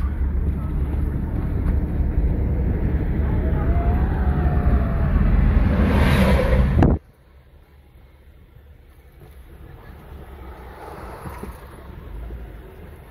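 Wind buffeting the microphone over road noise from a moving car with a side window open, loud and steady. About seven seconds in it cuts off abruptly to a much quieter steady road hum heard inside the closed cabin.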